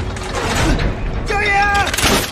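Wooden gear-driven crossbow trap mechanisms cranking and ratcheting, with a short high squeal near the end.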